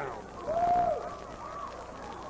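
A single drawn-out vocal cry from a man, like a 'hooo', rising and then falling in pitch over about half a second. It is followed by fainter wavering voice sounds over arena background noise.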